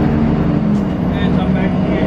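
Steady low drone of a city bus engine heard from inside the cabin while riding, with a voice over it about a second in.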